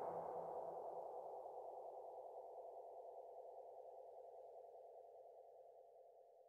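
The final chord of the background music ringing out and slowly fading to silence.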